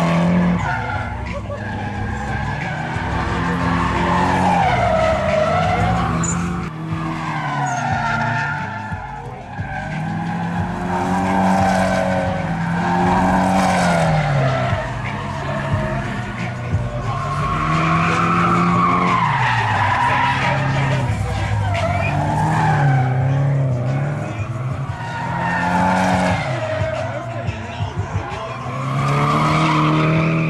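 Drift cars' engines revving hard, the pitch climbing and falling again every few seconds as the cars slide sideways, with tyres screeching on the tarmac.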